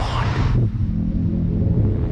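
Low, steady rumbling drone of the trailer's score, with a hiss that dies away in the first half-second.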